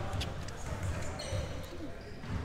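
Basketballs bouncing on a gym's hardwood floor, several low thuds at an uneven pace, with a few short sharp squeaks between them.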